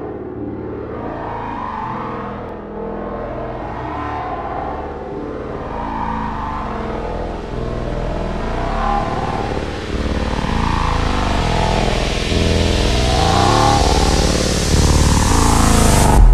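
Intro of an electronic music track: deep synthesizer bass notes under slowly swirling, sweeping mid-range tones. A rushing noise swell rises steadily in brightness and loudness and cuts off suddenly at the end.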